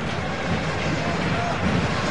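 Steady noise of a stadium crowd, an even wash of many voices with no single voice standing out.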